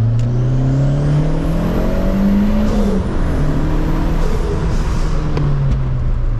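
Turbocharged VW Polo EA111 1.6 eight-valve engine at full throttle in second gear, heard inside the cabin. The revs climb for about two and a half seconds with a high turbo whine rising alongside. About three seconds in they drop sharply with a brief hiss, then hold lower and ease off near the end.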